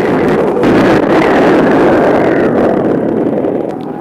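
Spaceship engine sound effect: a loud, steady rushing roar with no pitch to it, easing off slightly near the end.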